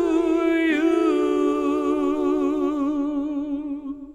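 A male tenor voice holding the song's final sung note, with a small dip in pitch about a second in and a vibrato that widens as the note goes on, then stops just before four seconds.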